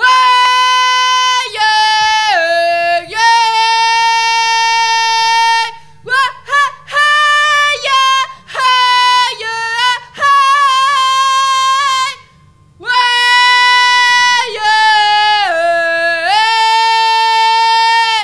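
A young woman singing unaccompanied into a microphone: long held high notes that step down in pitch, in several phrases with short breaths between and a pause of about a second past the middle.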